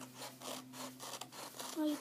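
Paper being handled and rubbed against a cardboard tube and the tabletop in repeated scratchy strokes, a few a second.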